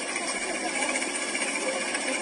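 Steady, noisy street ambience in amateur video footage, with faint distant voices.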